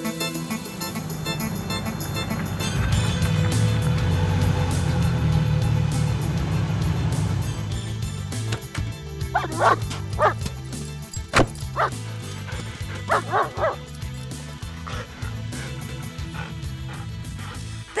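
Recorded game-CD soundtrack: background music with a steady bass pattern, and a dog barking in two short bursts of a few barks each, about halfway through and again a few seconds later.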